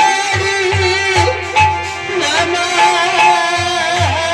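Live folk-theatre band music: a sustained, wavering melody over a steady low drum beat.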